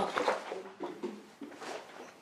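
A person's voice in a small room making a few short, quiet murmurs or groans, no clear words, fading out near the end.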